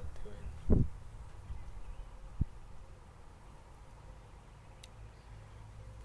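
A distant house alarm sounding as a faint steady tone. A short low thump comes under a second in, and a single sharp click follows a little later.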